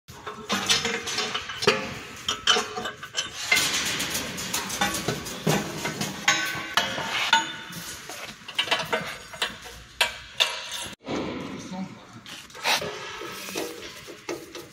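Irregular metal clanks and clinks of steel machine parts and hand tools being handled on a chain link fence machine.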